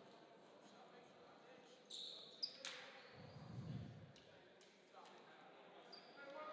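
Near silence: quiet gymnasium ambience with a few faint, brief taps and a soft low murmur midway.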